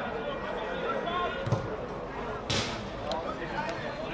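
A football being kicked on a grass pitch: a single dull thud about a second and a half in, with a short sharp noise about a second later. Spectators' voices chatter around it.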